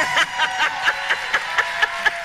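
A person laughing in a steady run of short, quick bursts, about four a second, with a faint steady tone underneath.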